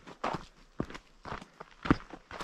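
Footsteps of a hiker walking on a dirt forest trail scattered with leaves, about two steps a second. The step near the end is the loudest.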